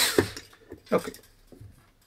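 Hand ratcheting screwdriver: the last clicking turns fade out in the first moment, then a single sharp click as the tool is pulled away. After that only faint small handling knocks.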